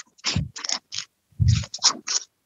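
A series of short scratchy, scraping noises in two quick clusters, like something rubbing against a microphone.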